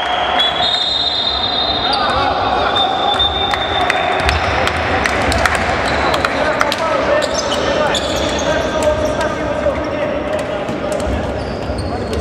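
Basketballs bouncing on a hardwood court with many sharp knocks, under players' voices echoing in a large sports hall. High thin squeaks come in the first few seconds and again about halfway through.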